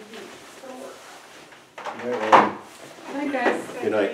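Indistinct talk from people in a meeting room, quiet at first, with a louder burst of voice about two seconds in.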